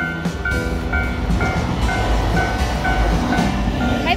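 Railway level-crossing bell ringing in a rapid, evenly repeated ding, over the rumble of a train passing.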